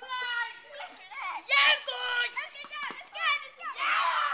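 A group of children's voices: high-pitched excited calls and chatter, loudest about a second and a half in.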